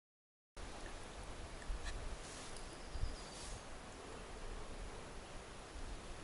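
Dead silence for about half a second, then faint, steady outdoor ambience: a soft even hiss, with a couple of small knocks and a brief faint high tone near the middle.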